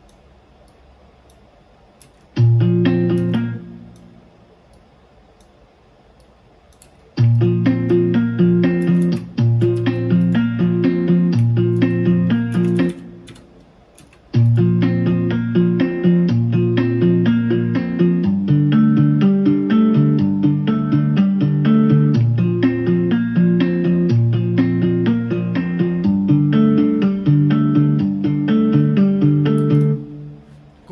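Sampled virtual guitar from a Kontakt library playing a slow, plucked chord progression, its notes lengthened so the open strings ring, with reverb. One short chord sounds a few seconds in, then the progression plays, breaks off briefly about halfway, and starts again.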